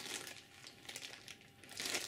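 Clear plastic zip bag crinkling faintly as it is handled, a little louder for a moment near the end.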